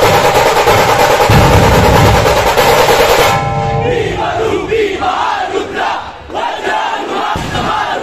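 Puneri dhol-tasha ensemble playing dhol and tasha drums in a dense, loud rhythm that stops abruptly about three seconds in; then a crowd of voices shouts together.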